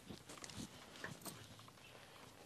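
Near silence: faint outdoor ambience with a few soft, scattered clicks and rustles.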